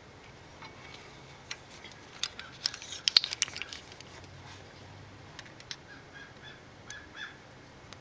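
Small metal clicks and scrapes of a wedge tool being worked into place against the edge of a valve bucket in the cylinder head, a quick cluster about three seconds in, then a few scattered ticks.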